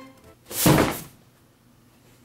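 A cardboard shipping box set down onto a wooden table with a single thunk about half a second in.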